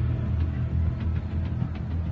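Background music bed under an audiobook: low, steady sustained tones with no melody standing out, in a pause between narrated sentences.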